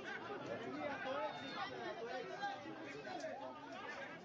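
Several people talking at once, their voices overlapping in steady chatter.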